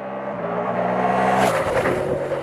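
Ducati Multistrada V4S's 1,158 cc V4 Granturismo engine running at a steady pitch and growing louder, then about one and a half seconds in swelling into a louder, rougher rush.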